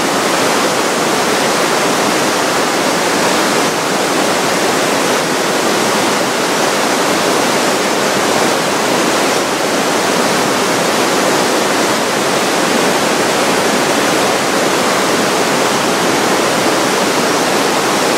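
The Aare river rushing through a narrow rock gorge: a loud, steady rush of water.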